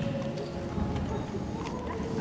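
Hoofbeats of a show-jumping horse cantering on the sand footing of an indoor arena, with dull thuds as it lands from a fence.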